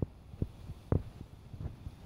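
Footsteps of someone walking, heard as a few dull low thumps about half a second apart over a faint low rumble.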